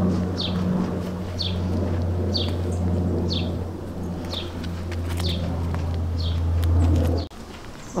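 A small bird repeats one short, falling chirp about once a second over a steady low hum. The hum stops abruptly near the end.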